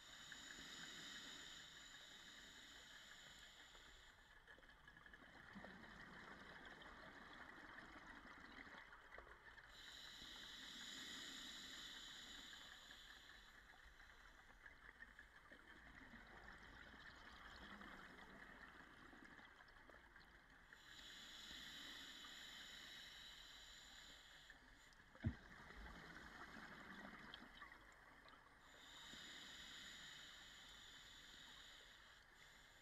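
Faint underwater sound of scuba breathing through a regulator, with hiss and bubbling swelling about every ten seconds in time with each breath. A single sharp knock comes near the end.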